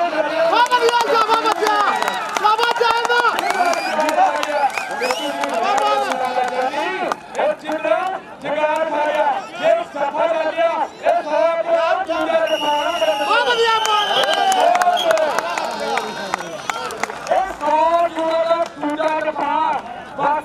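A man's continuous, rapid speech, the voice of live match commentary, over crowd noise from the spectators. A brief high steady tone sounds about two-thirds of the way through.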